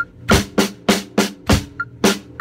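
Acoustic drum kit played with sticks in a steady beat, sharp drum strikes about three a second, with deeper bass-drum thumps among them.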